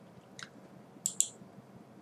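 Computer mouse clicking: a faint click about half a second in, then two sharper clicks close together a little after a second, against quiet room tone.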